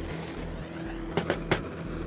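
Handheld gas blowtorch hissing steadily as its flame plays on a solid lump of titanium, which does not catch fire. Three short clicks come in the second half.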